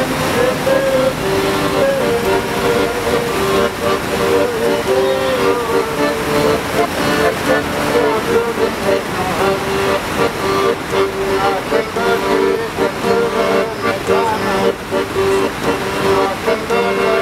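Accordion playing a tune: a moving melody over steady held chords, with a haze of outdoor background noise.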